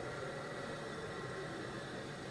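Steady, even hiss of room tone with no distinct events.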